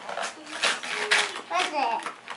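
Wrapping and tissue paper rustling and tearing in short bursts as a present is unwrapped, with a child's voice near the end.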